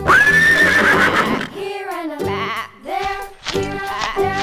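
A horse neighing: one loud whinny that starts suddenly, rises and holds high for about a second and a half, over a cheerful children's music track that plays throughout.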